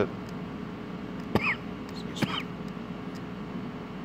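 A steady low hum of room tone, with two short sharp sounds about a second and a half and two seconds in.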